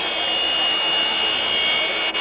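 Basketball arena background noise with a steady high-pitched tone held throughout, stopping at about two seconds.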